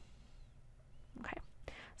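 A pause in speech with only faint background hiss, then a soft spoken "okay" a little over a second in.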